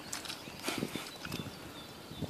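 Irregular light taps and knocks, a few each second, over a steady rain hiss.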